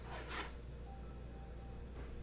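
Faint handling of a metal trading-card tin box in the hands: a brief scrape about half a second in, over a steady low room hum.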